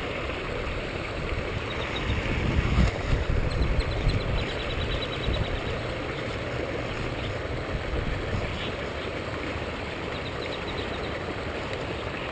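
Water pouring over a small stone spillway into a pond, a steady rushing.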